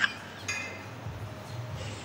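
A quiet pause: faint room noise with a low steady hum, the tail of a high-pitched laugh cutting off at the very start.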